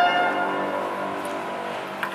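Bell-like ringing tones that start just before and die away over about two seconds, with a faint hiss beneath.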